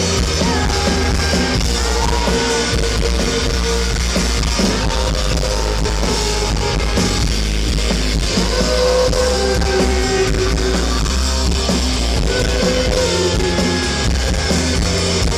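Rock band playing live through a PA, with electric guitars, a drum kit and a male lead voice singing over them.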